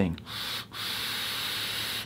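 Air being drawn hard through a squonk mod's rebuildable atomizer in a steady hiss, with a brief break about two-thirds of a second in. The draw stops suddenly at the end. The mod is switched off, so the coil is not firing.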